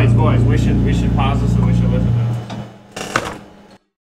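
Closing note of a rock band demo ringing out: a held low bass note that fades away about two and a half seconds in, with voices over it. A short burst of sound near the end, then the recording cuts off to silence.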